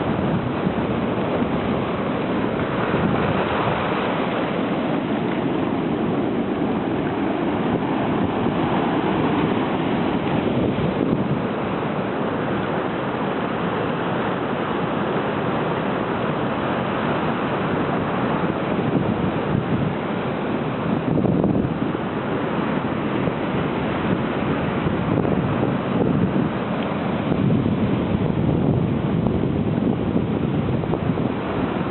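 Sea surf breaking over and washing through rocks along the shore, a continuous rushing that swells and eases as each wave comes in.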